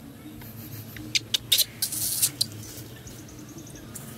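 A baby macaque giving a quick run of about six short, shrill squeaks about a second in, lasting about a second and a half.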